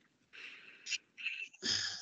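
Soft, breathy noises picked up by a video-call microphone: several short breaths, the last an intake of breath just before speech resumes.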